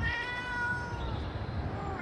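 A cat meowing: one long, drawn-out call lasting about a second that falls slightly in pitch, then a fainter short meow near the end.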